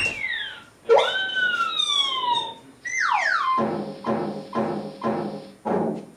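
Comic theatre sound effects for a croquet ball being struck and flying off: a sharp swoop at the start, then long falling whistle-like glides, followed by about five evenly spaced drum-like beats.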